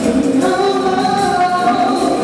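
Live afrobeat band playing, with a woman singing long held notes into a microphone over the band.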